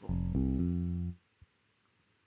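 GarageBand's Fingerstyle Bass software instrument playing two low plucked electric-bass notes, the second entering about a third of a second after the first; they ring for just over a second and then stop.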